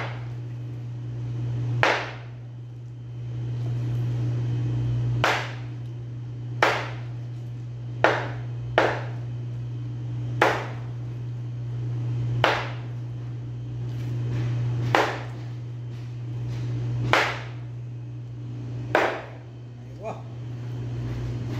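A knife chopping through raw chicken onto a plastic cutting board: about ten sharp chops at uneven intervals, one to two and a half seconds apart. A steady low hum runs underneath.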